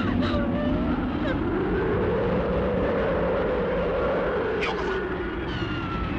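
Dense rushing roar of a jet aircraft sound effect, swelling and fading between about two and five seconds in as if the plane passes by. From about five seconds a thin high whine slides slowly downward.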